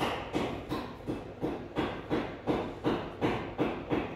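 Rhythmic knocking, about three knocks a second, each a sharp hit with a short ringing tail.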